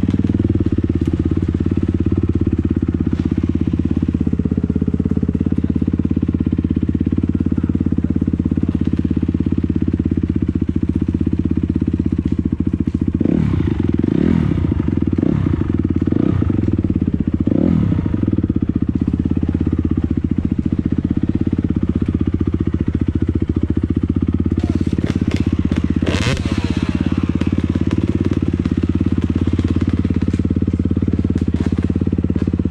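250 dirt bike engine running under the rider on a forest trail, close to the on-board camera, with a steady note for most of the time. Around the middle the engine revs up and down several times, and near the end a quick cluster of knocks and clatters cuts through.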